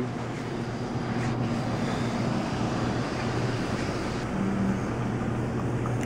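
A steady low machine hum under an even rushing background noise.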